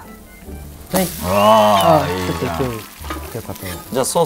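A batter pancake sizzling on a hot teppan griddle as it is flipped with metal spatulas, with light scraping of the spatulas on the iron plate. About a second in, a long drawn-out vocal call rises and falls for nearly two seconds and is the loudest sound.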